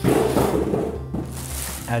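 Packaging rustling as a boxed, plastic-wrapped adjustable dumbbell is unpacked: a crinkly rustle that starts suddenly and is loudest in the first second, over background music.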